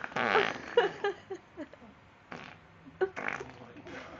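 Raspberries blown with the mouth pressed against the bare skin of a leg: a loud burst near the start, short squeaky blips after it, and two more bursts in the second half.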